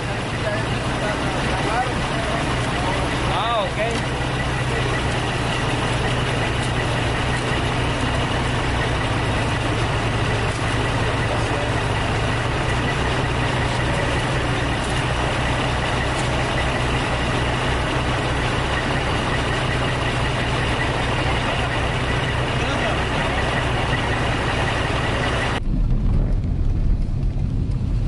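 A truck engine idling steadily close by, with people talking over it. Near the end it gives way to the low rumble of a car driving, heard inside the cabin.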